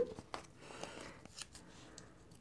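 Faint handling sounds: a few light clicks and a soft rustle near the middle as a roll of mini glue dots is picked up and handled.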